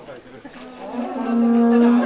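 A steady, sustained low horn-like tone that breaks off at the start and comes back in about half a second in, then holds.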